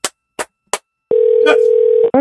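A few short clicks, then about a second in a steady telephone ringback tone over the phone line: the outgoing call is ringing and has not yet been answered.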